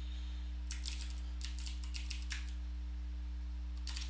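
Computer keyboard being typed on: a few quick runs of key clicks in the first half and another keystroke or two near the end, over a steady low electrical hum.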